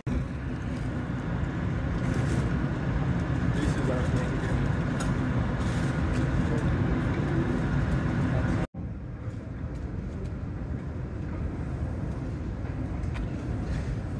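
Steady airport terminal ambience at a departure gate: a low rumble with the murmur of distant voices. It cuts out briefly about nine seconds in and comes back quieter.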